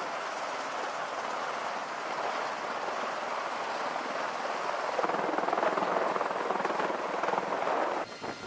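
Steady whooshing engine noise of aircraft running on an amphibious assault ship's flight deck, mixed with wind, getting somewhat louder about five seconds in.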